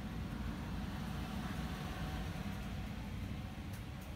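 Steady low background rumble with a faint hum.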